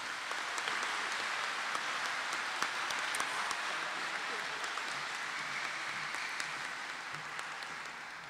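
Audience applauding: steady clapping from a large crowd that slowly dies down toward the end.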